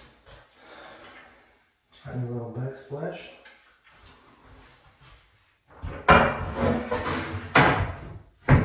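Loose vanity backsplash piece set down on the countertop and slid back against the wall: a hard knock with a scrape about six seconds in, and another about a second and a half later.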